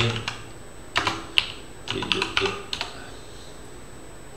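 Typing on a computer keyboard: short clusters of keystrokes, one of them a sharper, louder click about a second and a half in. The typing stops a little before three seconds in.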